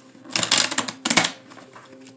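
A deck of cards being shuffled by hand: two quick flurries of flicking card clicks, the second shorter.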